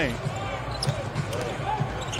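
Basketball being dribbled on a hardwood court during live play, with faint voices in the arena.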